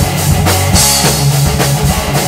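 Rock band playing an instrumental passage: drum kit keeping a steady beat under guitars and bass, with a cymbal crash a little under a second in.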